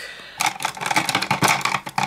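Plastic eyeliner pens and pencils knocking and clattering together as a handful is gathered up and moved, a quick run of clicks starting about half a second in.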